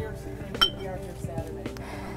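Glass pestle clinking against a glass mortar while lactose and drug powder are mixed until uniform, with one sharper clink a little over half a second in. Soft background music runs underneath.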